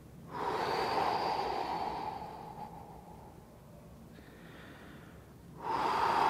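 A man breathing deeply and audibly through his mouth while stretching. One long, loud breath lasts about two seconds, a fainter breath follows, and another loud breath begins near the end.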